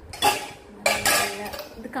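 Stainless steel pots clanking against each other and the dishwasher's wire rack, two knocks a little over half a second apart, the second ringing on briefly.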